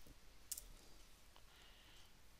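A few faint computer clicks over near-silent room tone, the sharpest about half a second in: a key press entering a terminal command.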